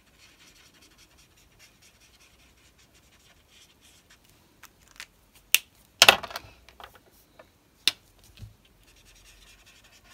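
Ohuhu alcohol marker stroking on card as colour is blended, a faint steady scratching. About five seconds in come a few sharp clicks, then the loudest sound, a brief rustle as the sheet of card is shifted, another click and a soft thud, before the faint marker strokes resume near the end.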